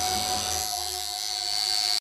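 Electric tattoo machine running with a steady buzz and a thin high whine.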